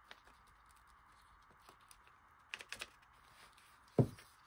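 Faint small clicks and taps of paper and craft supplies being handled on a desk while a page is glued, with a cluster of three or four louder clicks about two and a half seconds in and a sharper click at the very end.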